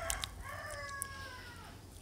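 A rooster crowing faintly, ending in one long, slightly falling call.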